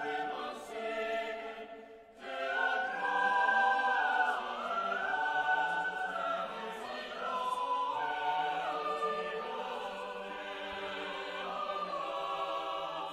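Cathedral choir of boys' and men's voices singing a slow piece in held chords that move step by step, with a brief breath between phrases about two seconds in.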